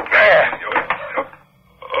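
A loud shouted exclamation for about a second, then a brief hush, in an old radio-drama recording with a thin, narrow sound.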